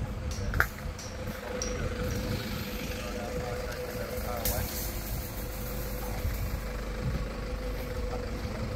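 An engine idling steadily, a low rumble with a constant hum, with a single sharp click about half a second in.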